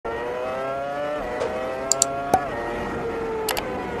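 High-revving sports car engine accelerating hard, its pitch climbing and then dropping sharply at upshifts about a second and two and a half seconds in. Several sharp cracks, the loudest sounds, come around the shifts.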